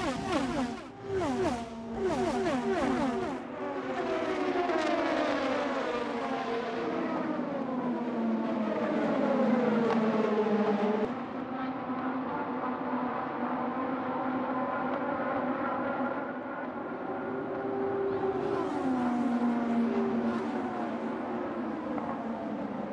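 IndyCar twin-turbo V6 engines at high revs passing one after another on the oval, each note falling in pitch as a car goes by.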